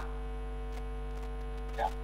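Steady electrical mains hum on the audio line, with a brief faint sound near the end.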